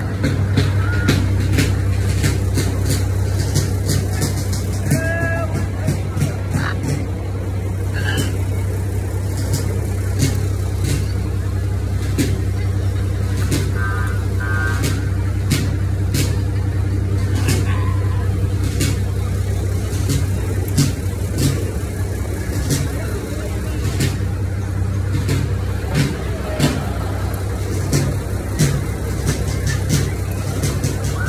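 Steady low drone of a truck engine crawling at parade pace, heard from aboard the vehicle, with frequent sharp clicks and knocks throughout.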